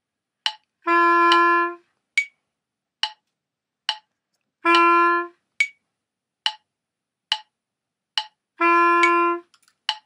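Metronome clicking at 70 beats per minute, every fourth click accented, with three held notes on a wind instrument, each about a beat long, played against the clicks as an offset-rhythm exercise.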